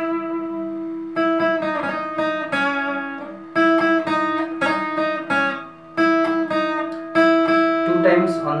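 Acoustic guitar playing a slow single-note melody on the high strings, with hammer-ons and vibrato. A new note is plucked about once a second while one note keeps ringing underneath.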